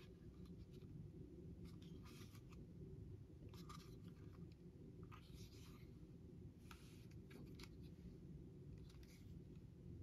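Near silence with faint, scattered clicks and rubs as a plastic clamp meter is handled and turned over in the hands.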